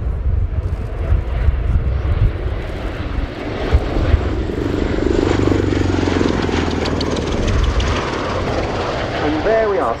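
CV-22B Osprey tiltrotor making a low, close pass with its nacelles tilting toward helicopter mode. Its two Rolls-Royce AE 1107C turboshafts and huge proprotors make a deep, throbbing drone that swells to its loudest about halfway through, then eases slightly.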